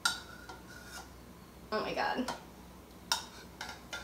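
A utensil clinking against a mixing bowl: one sharp clink at the start and a few lighter ones near the end, each ringing briefly, while stray egg yolk is being cleaned out of separated egg whites. A short wordless vocal sound comes in the middle.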